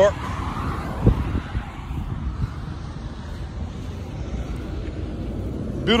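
Road traffic on a multi-lane road: a car passing close by, its noise fading over the first couple of seconds, then a steady traffic rumble. A single short thump about a second in.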